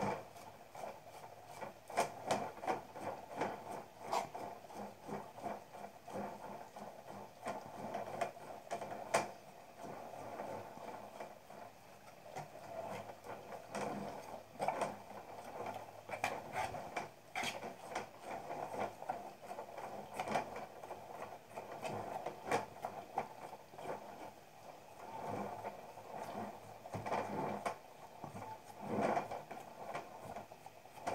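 Fingers rubbing and smoothing the wall of a soft, freshly coiled clay pot: a faint, irregular scraping with scattered small clicks and knocks.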